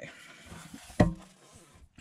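A collaged hardcover book board set down on a cutting mat, making one sharp knock about a second in, amid light rustling of paper being handled.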